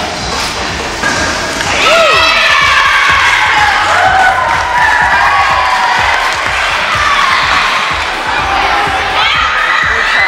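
A group of young girls cheering and shouting in high voices, the shouting swelling about two seconds in and going on steadily.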